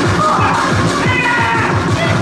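Loud electronic backing music with a fast bass-drum beat, about four to five hits a second, and wavering high synth tones gliding over it.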